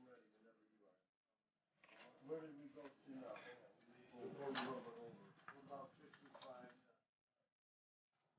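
Faint talking: a person's voice in the background, too low for the words to be made out.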